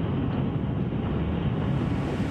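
A steady, loud rumbling engine noise, with a little more hiss coming in near the end.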